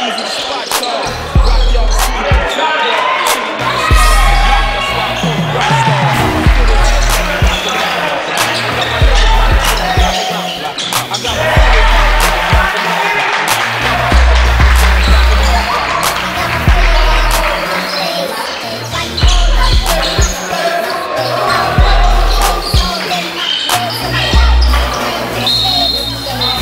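Hip hop music with a heavy bass beat landing about every two seconds, with vocals over it.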